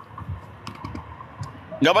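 Low background noise with a few faint, short clicks, then a man starts speaking near the end.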